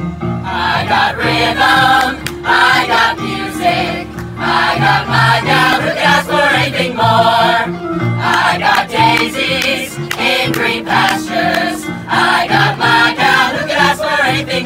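Youth chorus singing a show tune together into microphones over instrumental accompaniment, amplified through a PA.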